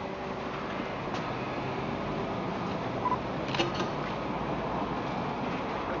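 Steady mechanical hum of a petrol station forecourt, with a few faint clicks.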